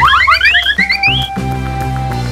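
Upbeat background music overlaid with a quick run of short rising whistle-like cartoon sound effects that climb higher and higher and stop a little over a second in, leaving the music playing on.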